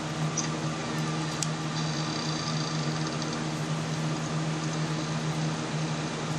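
A steady low hum from a small motor, unchanging throughout, over a faint even hiss.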